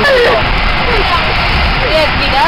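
Steady running noise inside a moving passenger vehicle, with a voice speaking briefly at the start, about a second in and again near the end.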